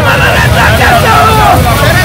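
A group of men chanting and shouting slogans together over the steady hiss of ground fountain firecrackers spraying sparks, with a heavy low rumble underneath.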